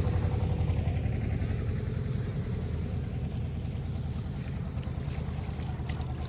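The diesel engine of a passing "shallow"-engine country boat, a single-cylinder irrigation-pump diesel, chugging steadily with a fast, low pulse. It slowly grows quieter as the boat moves off.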